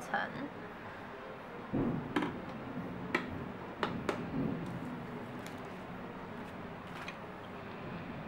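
A few light clicks and knocks of small objects being handled and set down on a tabletop, with a dull thump about two seconds in, over a steady low hiss.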